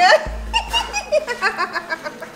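Women laughing in quick repeated bursts, loudest at the very start, over background music.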